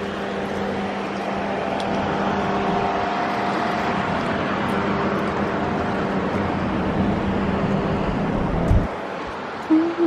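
Street traffic with a steady low engine hum that stops abruptly about nine seconds in.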